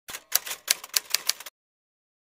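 Typewriter sound effect: a quick run of about a dozen key clicks over a second and a half as a title is typed onto the screen, then it stops.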